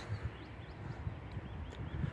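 Outdoor background: an uneven low rumble of wind and handling on the phone's microphone, with faint short bird chirps.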